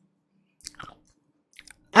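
Faint mouth noises from a speaker close to the microphone: a few short lip and tongue clicks about two-thirds of a second in and again near the end, just before he starts speaking.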